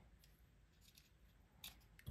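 Near silence, with a few faint clicks from a small screwdriver bit turning a Loctite-held screw in a folding knife; one sharper click comes about one and a half seconds in.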